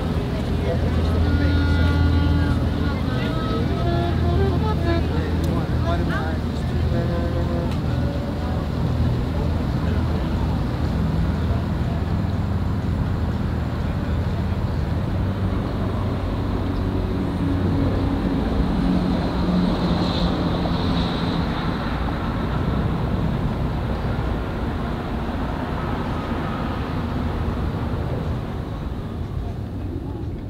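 Low, steady engine rumble of a passenger ferry moving across the river, with indistinct voices over it, giving way after about fifteen seconds to a steadier wash of distant harbour noise.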